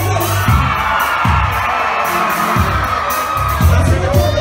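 Loud amplified music with a heavy bass beat, and a large crowd cheering over it.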